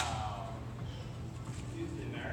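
A person's voice trailing off with a falling pitch, then a steady low hum.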